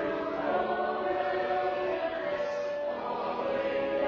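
Church congregation singing a hymn together in slow, held notes, accompanied by a pipe organ.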